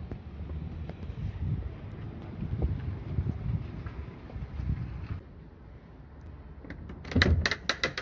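Footsteps and handling noise from a phone camera carried along a path, then a quick clatter of sharp knocks at a front door about seven seconds in.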